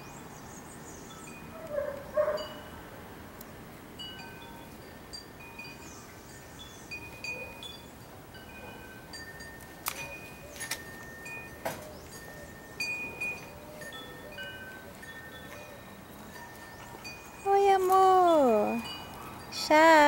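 Wind chimes ringing on and off, with single high metallic notes of different pitches scattered through, and two sharp clicks about ten and twelve seconds in. Near the end, a loud voice-like call glides down in pitch, and a second call follows right at the end.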